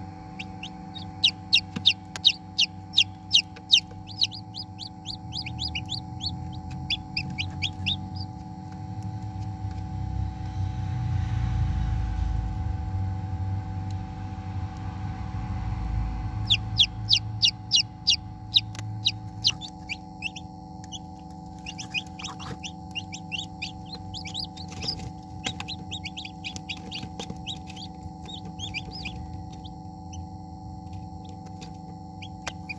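A newly hatched chicken chick peeping: runs of short, high-pitched peeps, two or three a second. The first run stops around 8 seconds in and a second run starts around 17 seconds. A steady hum runs underneath.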